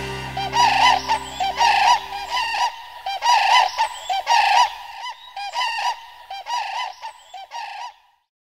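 Common cranes calling: a rapid run of honking, arched calls, about two a second, growing fainter toward the end. A sustained music chord sounds under the first two and a half seconds, then stops.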